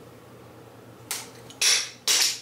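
Pump spray bottle of fragrance being sprayed: a short hiss about a second in, then a longer, louder hiss near the end.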